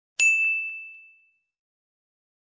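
A single bell 'ding' sound effect for the subscribe bell, struck once and ringing out as it fades over about a second.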